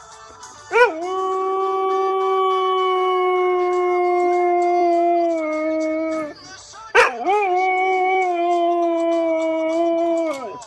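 Chocolate Labrador howling along to music: two long, steady howls, the first lasting about five seconds and the second starting about a second after it ends, each opening with a quick rising note.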